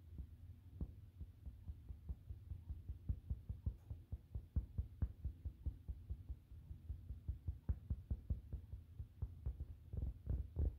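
Fingertips and long fingernails tapping on a rug close to the microphone: soft, quick, irregular taps, several a second, growing louder after the first few seconds.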